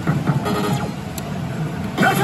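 Pachislot machine in play: the reels spin and are stopped one after another, with short clicks and the machine's electronic game sounds.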